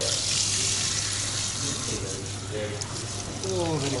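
Handheld sprayer at a shampoo basin spraying water onto a customer's hair in a steady hiss, switching on abruptly at the start.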